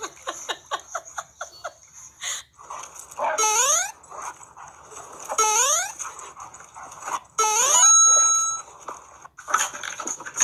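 A dog yipping quickly, then giving three loud whining cries that rise in pitch, about two seconds apart, the last one held briefly.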